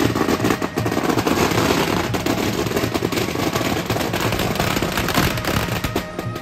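A string of firecrackers going off in a rapid, unbroken rattle of sharp bangs that stops near the end.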